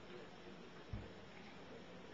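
Faint room tone with a single brief, low thump about a second in.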